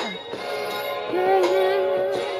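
A woman singing wordless, sliding notes, then a long held note with a slight waver from about a second in.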